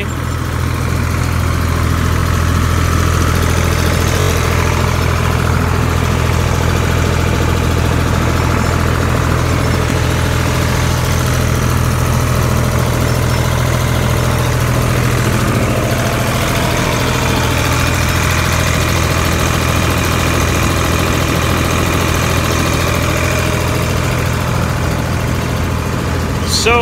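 Mobile seed cleaner running under load while cleaning hemp seed, with its screens, suction fans and auger all going. The sound is a loud, steady mechanical drone with a strong deep hum.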